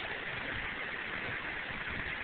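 Heavy rain beating on a car's roof and glass, heard from inside the cabin as a steady hiss.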